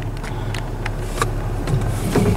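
Steady low hum of a car idling, heard from inside the cabin, with a few faint clicks.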